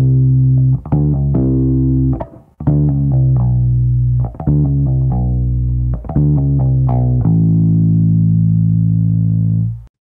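Electric bass guitar playing multiple-note pull-offs: each pluck is followed by two or more lower notes sounded by lifting fretting fingers off the same string. The notes come in a few phrases with short breaks, and the last note rings for a couple of seconds before cutting off suddenly near the end.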